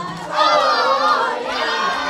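A group of people, many of them women and children, shouting and cheering together while dancing, with a loud burst of high voices about half a second in.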